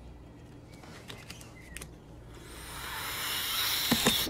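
A long nasal snort: air drawn hard up one nostril for about two seconds, growing louder toward the end, as a line of cocaine is sniffed up.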